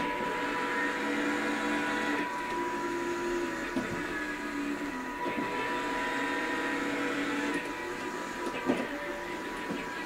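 Drive motors of a small wheeled line-following robot whining as it drives and turns, the pitch shifting as the motors change speed, with a few faint clicks.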